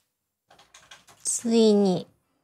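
A few faint light clicks and taps, then a woman's short, drawn-out voiced sound, like a hum or held vowel, that is loudest near the end.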